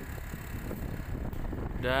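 Low, rough rumbling of wind buffeting the microphone and road noise from moving along a bumpy dirt road. A man's voice comes in right at the end.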